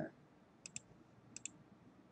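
Two clicks of a computer mouse button, about three quarters of a second apart, each a quick double tick.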